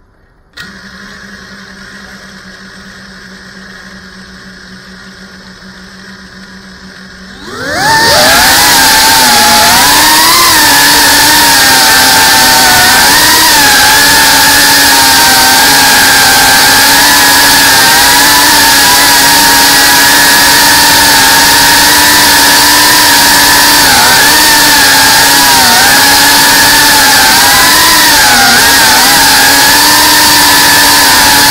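A low steady hum, then about 8 s in the FPV quadcopter's motors and propellers spin up with a quick rising whine and keep up a loud whine as the drone flies, the pitch wavering up and down with throttle, heard close from the drone's own camera.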